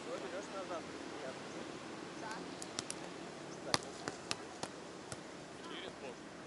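A string of sharp slaps from hands hitting a beach volleyball, several of them bunched in the middle, over faint distant voices of players.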